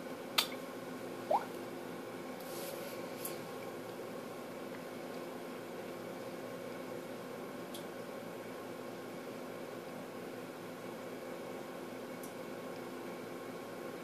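Steady low room hum, with two sharp taps in the first second and a half as fingertips tap the tablet and phone touchscreens. Only a few faint ticks follow.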